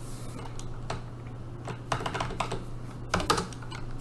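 Computer keyboard being typed on, single keystrokes and short runs at an uneven pace, over a steady low hum.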